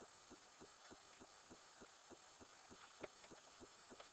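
Near silence: a faint, regular pulsing about three times a second, with one slightly sharper click about three seconds in.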